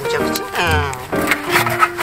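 Background music with steady pitched notes, and a sliding, falling tone about half a second in, like an edited-in comic sound effect.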